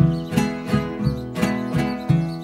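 Acoustic guitar strummed in a steady rhythm, about three strokes a second, each chord ringing on between strokes.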